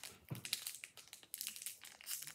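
Foil wrapper of a Pokémon Shining Fates booster pack crinkling in the hands as it is worked open, a quick irregular run of small crackles.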